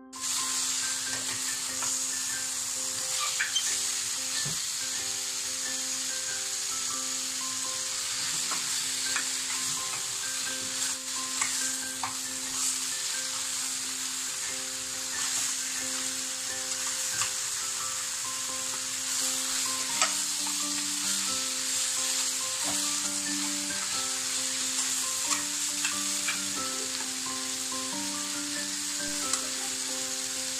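Chicken pieces frying in hot oil with onions and spices in a stainless steel pan, sizzling steadily while a spatula stirs them, with scattered clicks of the spatula against the pan.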